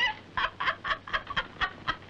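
Women laughing in a run of short, staccato bursts, about five a second, that tail off near the end.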